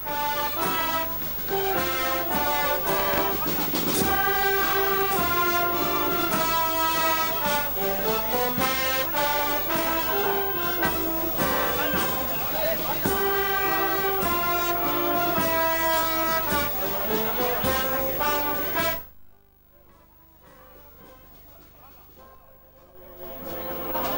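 Brass band with trombones and trumpets playing processional music; it stops abruptly about nineteen seconds in, leaving a much quieter background.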